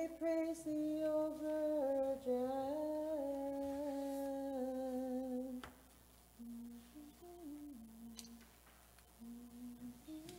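A single voice chanting a long, wordless melisma in Orthodox church chant, holding notes that step up and down in pitch. A little past halfway it breaks off and a quieter, lower line of chant carries on.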